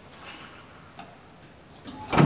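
A few faint ticks about a second apart. The last one, near the end, is the lift's call button being pressed.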